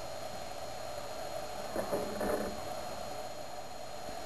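Steady low rushing noise from a homemade 18-jet aluminium-can alcohol stove burning under a pot of water inside a windscreen, with a faint brief sound about two seconds in.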